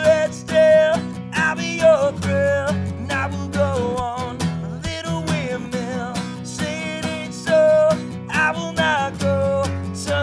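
A solo acoustic guitar strummed steadily under a man's voice singing held, wavering notes of the melody.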